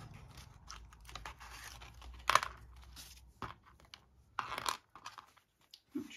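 Paper pages and tags of a handmade journal rustling and crinkling as they are handled and freed from a catch, with two louder crackles about two and four and a half seconds in.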